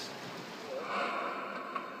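Soft steady hiss of seaside ambience, changing about halfway through to a brighter steady hiss of a car interior.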